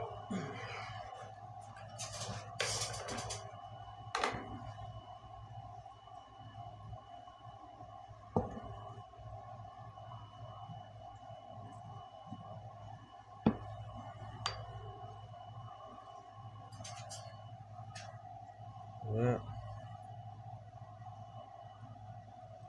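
Scattered knocks and taps of a plastic block and tools on a wooden block and workbench as netting is pressed into aluminum foil tape to emboss a pattern, over a steady background hum. The sharpest knock comes about halfway through.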